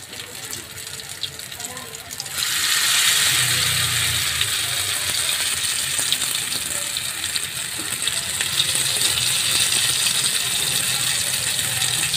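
Potato-and-egg kabab batter frying in oil in a non-stick pan: a faint crackle at first, then about two seconds in a fresh spoonful of batter goes into the hot oil and a loud, steady sizzle with fine popping takes over.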